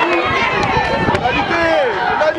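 Rugby players shouting calls to each other as they run, the loudest call falling in pitch near the end, over dull thuds of feet on the grass pitch.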